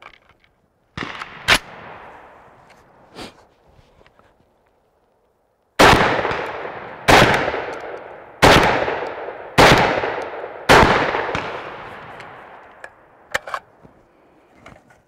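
Century Arms SAS 12 semi-automatic 12-gauge shotgun fired five times in quick succession, about a second and a quarter apart, each shot echoing away through the woods. A metallic clack and a few clicks come from handling the gun before the shots, and a few more clicks come near the end.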